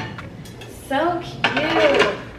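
Metal cookware being handled and set into a pan rack: a few light clinks and knocks as a pan goes into its slot.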